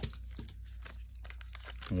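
Foil wrapper of a Magic: The Gathering collector booster pack crinkling as gloved hands handle it and open it, with a sharp click at the start and a few faint crackles after. A low steady hum runs underneath.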